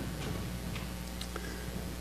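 A quiet pause: a steady low hum with four or five faint, sharp clicks, spread over the two seconds.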